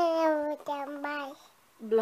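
A young child singing two long wordless held notes, the second a little lower than the first, ending about a second and a half in.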